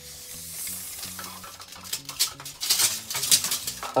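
A metal tape measure being handled and its blade pulled out: a hiss at first, then quick rattling clicks that get louder in the second half.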